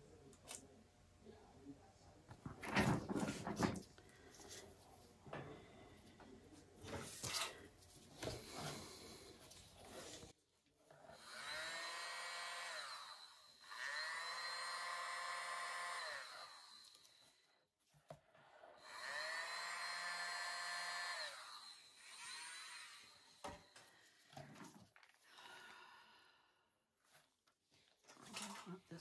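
Small handheld electric blower running in two spells of several seconds each, its whine rising as the motor spins up and falling as it winds down, blowing wet acrylic paint across the board. Before it, scattered knocks and handling clicks, the loudest about three seconds in.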